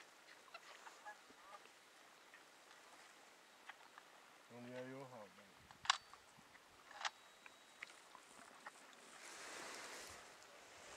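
A goose gives one drawn-out, slightly falling honk about halfway through, against a faint quiet background. Two sharp clicks follow about a second apart, and near the end there is a rise of rustling noise.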